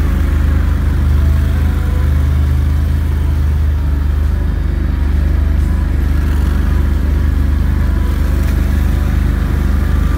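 Engine of an amphibious all-terrain vehicle running at a steady pace while driving along a muddy trail, a constant low drone with no revving.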